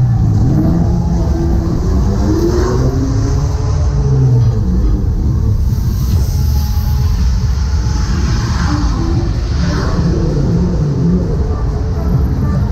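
A fairground ride running: a loud low rumble under the ride's music, with a hiss from the ride's fog cannon about halfway through.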